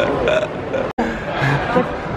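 A man's voice making unworded vocal sounds, cut by a sudden brief dropout about halfway through.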